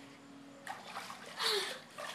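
Pool water splashing as a swimmer in a mermaid tail strokes up to the pool edge: quiet at first, then a couple of splashes in the second second.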